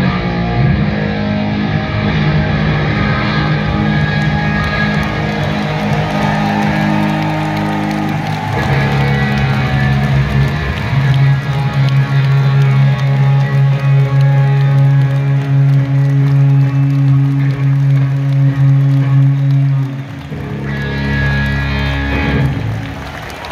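Electric guitar and bass guitar played live through a stadium PA: a rock song's closing bars, with long held chords ringing out until they stop about twenty seconds in.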